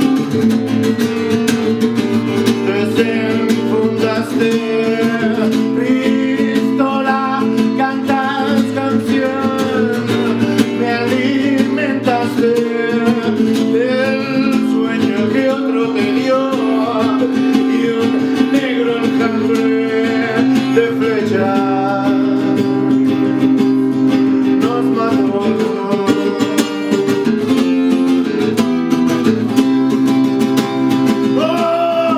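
Solo acoustic guitar played live, fingerpicked and strummed without a break. A man's voice sings over it through much of the middle stretch.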